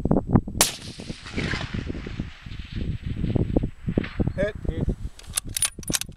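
A single .308 rifle shot about half a second in, its report ringing out and echoing for over a second. A few sharp clicks follow near the end.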